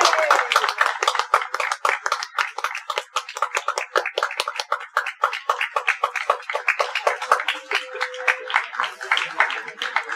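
A small group of people clapping, the individual claps distinct rather than merged into a roar, thinning slightly near the end.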